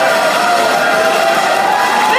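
A girl singing solo through a microphone and PA, holding one long, slightly wavering note over music while the audience cheers.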